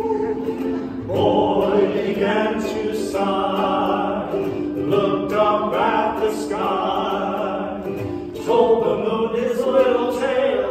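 Two men and a woman singing together in harmony, holding long, drawn-out notes, with a ukulele accompanying. A new held chord comes in about a second in and again near the end.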